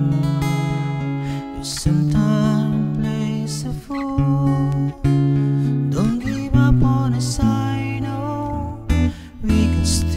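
Acoustic guitar played in slow strummed chords, each chord left to ring on for a second or two before the next stroke.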